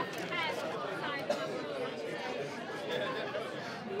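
Background chatter of several voices in a busy room, with no single voice standing out.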